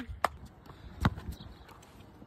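A basketball bouncing once on an outdoor court about a second in, a short sharp thud, with a few fainter clicks before it.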